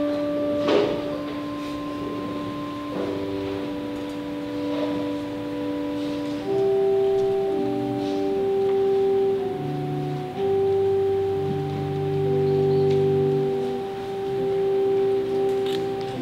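Organ playing slow, sustained chords, the held notes shifting every second or two, with no singing.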